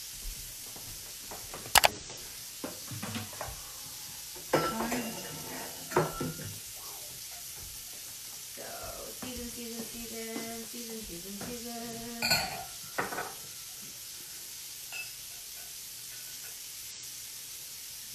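Beyond Meat plant-based burger patties sizzling steadily in grapeseed oil in a hot frying pan. Several sharp clinks and knocks of utensils and seasoning containers against the pan and counter, the loudest about two seconds in.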